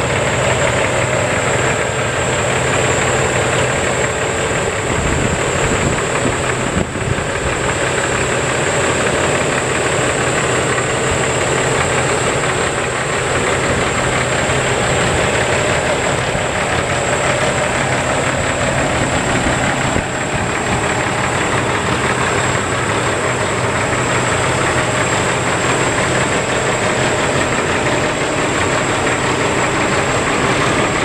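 Heavy diesel truck engine idling steadily, a constant low drone with a broad rushing noise over it.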